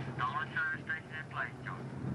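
Indistinct voice talking over a steady low hum and hiss.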